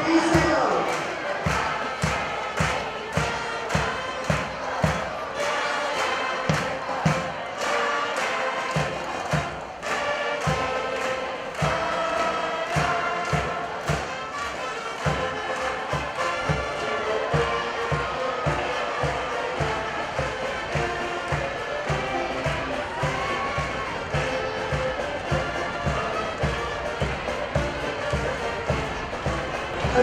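Military marching band playing a march: drums keep a steady, even beat under a sustained melody from the band's horns.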